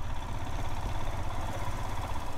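Motorcycle engine running steadily as the bike rides along, heard as a low, even rumble from the rider's seat.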